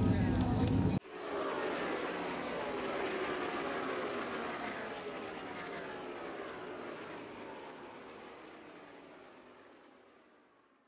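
Stock car engines running at speed on an oval, their pitch dropping repeatedly as cars pass, the sound fading out gradually. It follows a second of loud trackside noise that cuts off suddenly.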